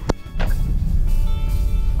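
Low rumble of a car on the move, heard from inside the cabin of a 2023 Daihatsu Xenia, coming in about half a second in after a brief sharp sound at an edit cut, with background music over it.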